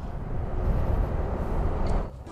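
Yamaha motor scooter riding along at road speed: a steady low rumble of engine and road noise.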